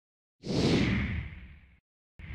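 Whoosh sound effect of an animated logo intro: a rush of noise comes in about half a second in, then fades away and stops just before the end.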